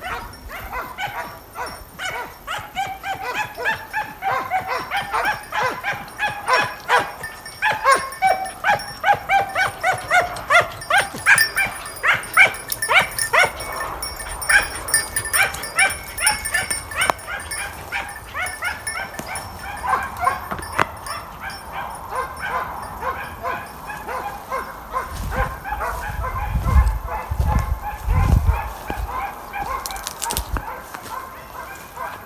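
Hare-hunting hounds baying and yelping, a quick, unbroken run of short high cries, as hounds give tongue in the chase. A few low thumps come near the end.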